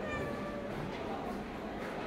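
A long-haired white cat meows once, a single call of under a second that falls slightly in pitch: a cat asking for food.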